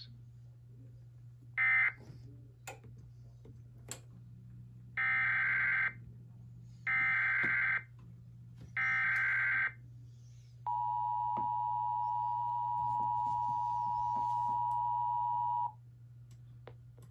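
TFT EAS 911 encoder sending an Emergency Alert System SAME header: three bursts of screechy digital data tones, each about a second long and a second apart. Then comes the two-tone attention signal, held steady for about five seconds. A shorter data burst sounds near the start, over a steady low hum.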